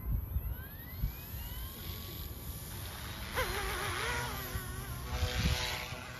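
Mikado Logo 200 electric RC helicopter spooling up, its whine rising in pitch, then running louder with a wavering rotor and motor tone from about three seconds in.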